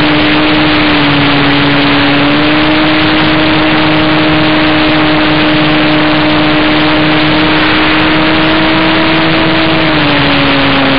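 In-flight onboard sound of an E-flite Beaver RC model plane: its electric motor and propeller hum at a steady pitch, with heavy wind rush on the wing-mounted microphone. The pitch dips slightly about a second in, rises a little, and drops near the end.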